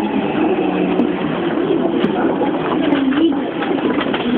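Yamanote Line electric train running and braking as it draws into a station platform: a steady running noise with low, wavering, warbling tones that bend up and down.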